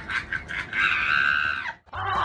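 A shrill, high-pitched scream held for about a second, cut off suddenly, after a few short sharp sounds.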